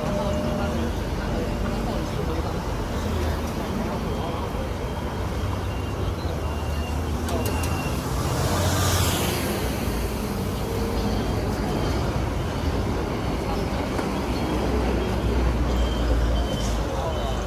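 Roadside street ambience: traffic running close by, mixed with the bubbling of chicken cutlets frying in a large open deep fryer and background voices. There is a brief louder hiss about nine seconds in.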